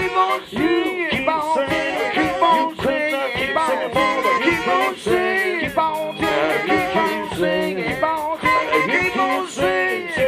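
Live funk band playing: saxophones over keyboard and electric guitar, with a steady beat.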